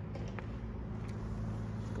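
A steady, even low hum, mechanical in kind, with a faint tick about half a second in.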